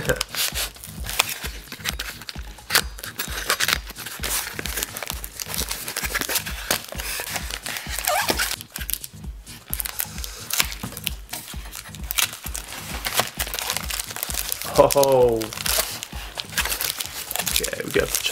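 Plastic shrink-wrap crinkling and a knife slitting and tearing open a cardboard box, a dense run of crackles and rips. A brief vocal sound comes about three quarters of the way through.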